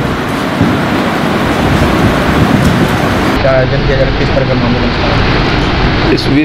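Indistinct voices of people in a room over a loud, steady background noise, with a few brief snatches of talk a little past halfway.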